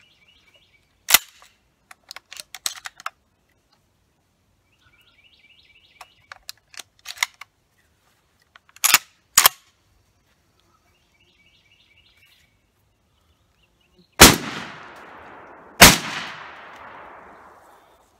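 Mossberg 935 12-gauge semi-automatic shotgun being loaded with three-inch magnum shells: metallic clicks of shells going in, then two sharp clacks of the action being worked. Then two shots about a second and a half apart, each with a long echo; the gun cycles both, showing it functions with three-inch magnums.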